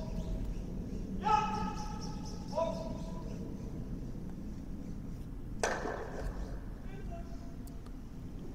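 Curling players shouting two short sweeping calls, about a second and two and a half seconds in. About five and a half seconds in, a sharp knock with a ringing tail as the delivered granite stone strikes another stone and lightly knocks it out.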